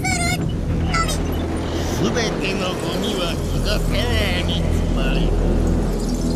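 A deep, steady rumble from a sci-fi sound effect, with high, wavering wordless voices crying out over it from time to time.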